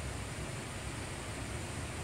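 Steady background hiss with a low hum underneath, in a pause between speech: room tone.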